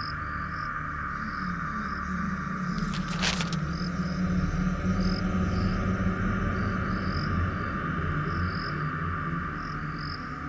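Night insect chorus with crickets chirping over a low drone; a short papery rustle about three seconds in as a newspaper is opened.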